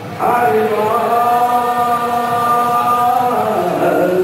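Devotional kirtan chanting: a voice starts a little after the start and holds one long steady note for about three seconds before the melody moves on.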